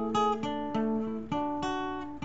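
Acoustic guitar played alone, with about five notes or chords picked in turn and left to ring into each other.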